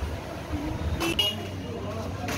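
Ambient background with faint voices over a low hum, and a short, sharp, high-pitched sound about a second in.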